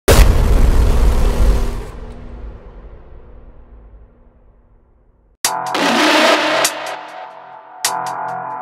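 A loud, noisy boom at the very start that fades away over about five seconds. About five and a half seconds in, the hardcore techno track kicks in with a harsh noise burst over held synth tones, with sharp hits near the end.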